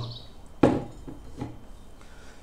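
Something set down on a hard surface: a sharp knock a little over half a second in, then a fainter knock near the middle.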